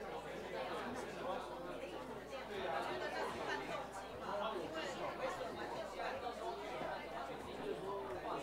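Overlapping chatter of a group of people talking at once, with no single voice clear.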